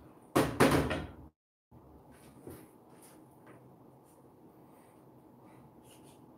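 Two loud knocks in quick succession about half a second in, followed by a few faint light taps.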